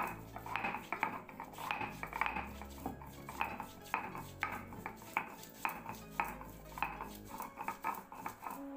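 A stone muller (nora) is rolled back and forth across a flat grinding stone (sil), grinding ginger and cumin into a paste. It makes rhythmic scraping strokes, about three a second.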